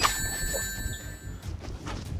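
A sharp hit followed by a bright, bell-like metallic ring of several high tones that lasts about a second and a half and then stops.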